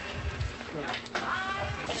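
Speech: people talking, with a high, wavering voice about a second in.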